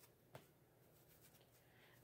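Near silence: room tone, with one faint short click about a third of a second in.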